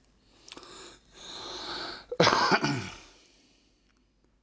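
A person sneezing: a drawn-in breath about a second in, then a sudden loud sneeze a little after two seconds.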